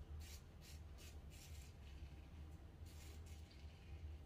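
Faint, short scrapes of a Razorock Hawk v.2 single-edge razor with a Feather Artist Club blade cutting through lathered stubble on the neck, about two or three strokes a second, over a low steady hum.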